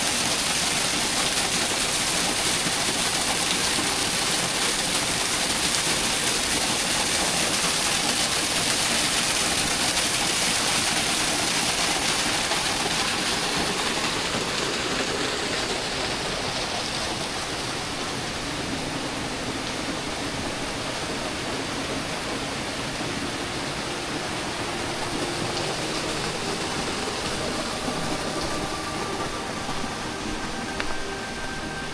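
Small waterfall cascading over mossy rock, a steady rush of falling water that grows quieter over the second half.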